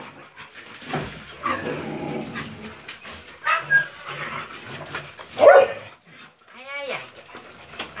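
Several excited dogs giving short barks and yelps, with a series of high, rising-and-falling whimpering whines about seven seconds in.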